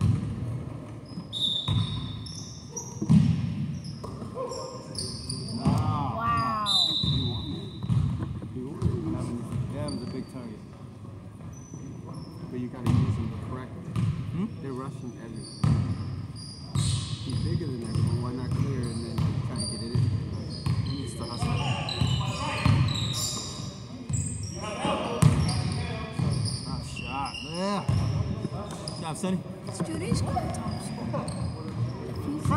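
Basketball game on a hardwood gym floor: the ball bouncing, short high sneaker squeaks now and then, and players' voices, echoing in a large hall.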